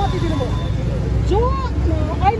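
A man's voice in short vocal bits over a steady low rumble of street traffic.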